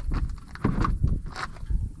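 Footsteps on pavement and irregular knocks of gear being handled and set down.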